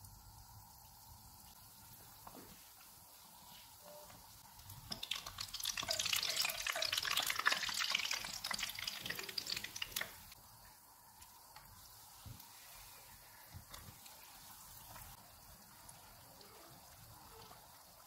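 Batter-coated bread pakora deep-frying in hot oil in a pan: the oil sizzles and crackles, faintly at first, louder for about five seconds in the middle, then faint again.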